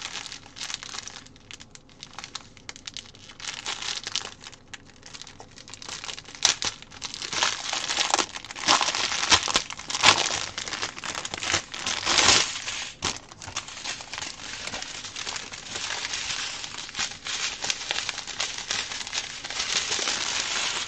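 Crinkling and rustling of a strip of small plastic packets of diamond-painting rhinestones being handled and worked open, loudest in the middle stretch.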